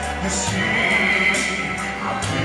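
A man singing a ballad live into a handheld microphone over a recorded backing track.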